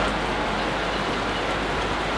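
Rain coming down steadily, a constant even hiss with no breaks.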